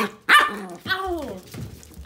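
A small long-haired dog barking, with two short calls: the louder one just after the start, the second about a second in and falling in pitch.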